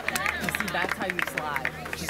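Background chatter of several voices, too indistinct to follow, with scattered sharp clicks and knocks throughout.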